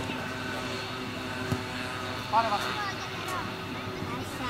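Children shouting and calling out during a youth football game, over a steady droning hum. A single thud comes about a second and a half in.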